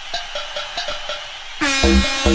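Bounce-style dance music from a DJ mix. A sparse passage of short, quick stabs with no bass gives way about one and a half seconds in to a loud held chord, and the heavy kick drum comes back in just before the end.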